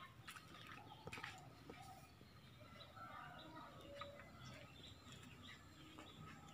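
Near silence outdoors, with faint bird calls scattered through it.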